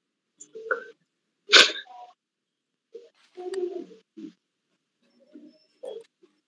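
Short, scattered bursts of a person's voice and breath over a video call. The loudest is a single sudden burst about one and a half seconds in, followed by a few quieter low mutters.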